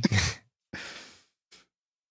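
A man's voice trails off at the end of a word, then a soft breathy exhale, like a sigh, about a second in.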